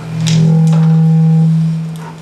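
A loud, low, steady tone swells in, holds for about two seconds and fades away. A fainter, higher tone sounds over it for about a second, and there are a couple of light clicks near the start.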